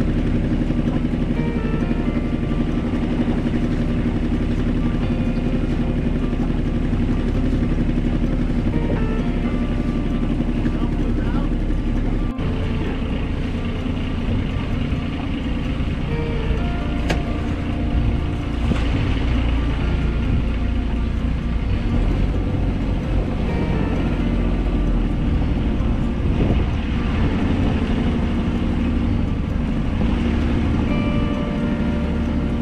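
A Catalina 30 sailboat's inboard engine running steadily as the boat motors out of its slip. There is a brief break in the sound about twelve seconds in.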